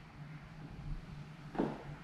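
Quiet room tone with a low steady hum and rumble, and one short soft sound about one and a half seconds in.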